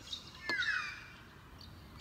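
A bird calls once about half a second in, a short call sliding downward in pitch, just after a sharp click.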